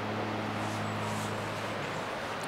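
A steady low hum over an even background hiss, with no distinct event.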